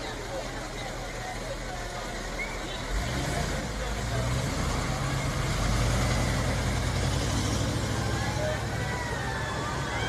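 A motor vehicle engine running close by, a low hum that grows louder about three seconds in and stays up, over the chatter of a roadside crowd.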